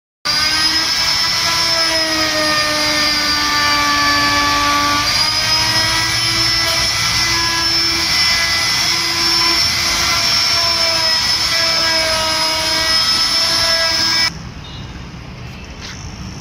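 A corded handheld electric power tool running steadily on a carved teak headboard panel, its motor whine dipping slightly in pitch now and then as it takes load. It cuts off abruptly about two seconds before the end, leaving quieter background noise.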